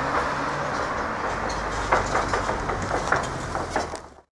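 A car driving past on the road, its tyres and engine making a steady rush of road noise.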